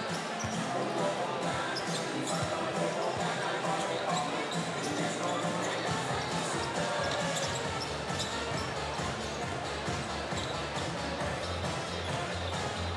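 Basketballs bouncing repeatedly on a hardwood court, many sharp knocks in an echoing arena, over a steady murmur of crowd voices and background music from the PA.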